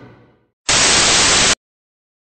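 Orchestral music fading out, then a loud burst of white-noise static lasting about a second that starts and cuts off abruptly, with dead silence on either side of it.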